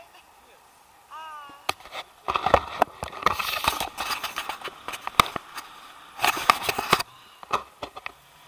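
Tandem paraglider take-off: wind rushing over the camera microphone with a rapid, uneven run of knocks and rattles from the harness and gear, from about two seconds in until about seven seconds in. A couple of further knocks come near the end.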